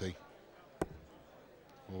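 A single sharp thud of a steel-tipped dart striking the bristle dartboard, about a second in, over low background noise; a man's "oh" begins right at the end.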